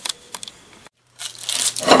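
Tissue paper crinkling and rustling as it is handled, growing louder toward the end, after a couple of faint clicks and a moment of total silence.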